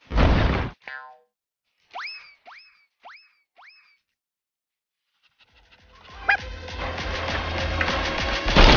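Cartoon sound effects: a loud short burst near the start, a brief tone, then four quick rising chirps about half a second apart. Background music fades in from about five and a half seconds and grows steadily louder.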